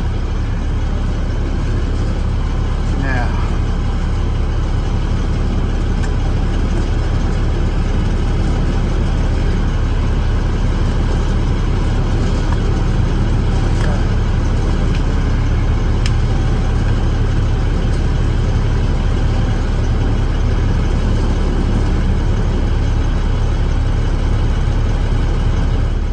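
Truck engine idling steadily: a deep, even low hum heard from inside the cab. A few faint clicks sound over it.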